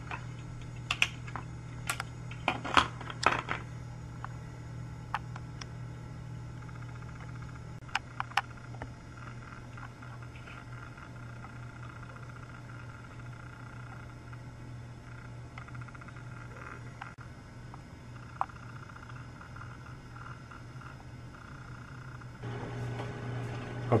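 A steady low hum with scattered sharp clicks and taps, a cluster in the first few seconds and a couple more about eight seconds in.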